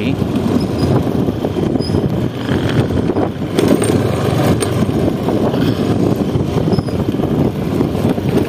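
Running engine and road noise of a moving vehicle, with wind buffeting the microphone, steady throughout.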